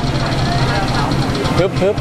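Steady low hum of street traffic with vehicle engines running, and a man's voice starting near the end.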